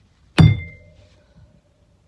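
A baseball bat swung at a piece of glass misses it and strikes something hard: one sharp hit with a ringing tone that fades over about a second.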